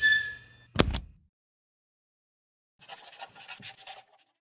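Sound effects for an animated logo: a short bright tone dying away at the start, two sharp snaps just under a second in, then after a pause about a second of scratchy strokes like a marker scribbling.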